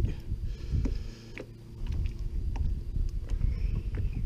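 Wind buffeting the microphone as a fluctuating low rumble, with a few light clicks and knocks.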